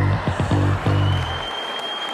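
A room of guests applauding over background music with a repeating bass line. The applause and music both fade out in the second half.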